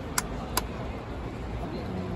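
Baseball stadium ambience, a low steady rumble of the crowd and ground, with two sharp claps in the first second close to the microphone.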